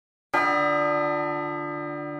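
A bell struck once, about a third of a second in, ringing on with many overtones and slowly dying away.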